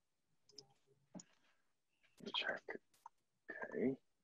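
A quiet pause with a few faint short clicks, a brief snatch of speech, and then a spoken 'okay'.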